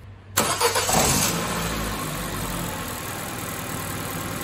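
Car engine started with a portable jump starter clamped to its battery: it cranks and fires about a third of a second in, flares briefly, then settles into a steady idle.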